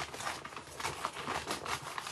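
Sheets of flattened shipping packing paper rustling and crinkling as they are handled, a dense run of small crackles.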